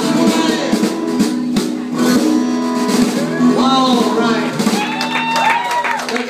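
Live honky-tonk country band playing, with guitars carrying steady sustained notes. A voice comes in over the music in the second half.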